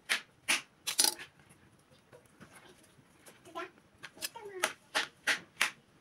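Kitchen utensils clicking and knocking in food preparation: about a dozen sharp, uneven clicks, coming faster in the second half.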